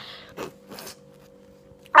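Quiet room with a faint steady hum, broken by two soft, brief rustles about half a second and a second in.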